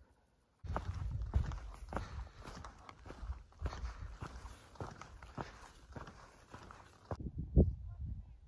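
Footsteps of a hiker walking on a dirt and stone trail, about two steps a second, over a low rumble. A single louder thump comes near the end.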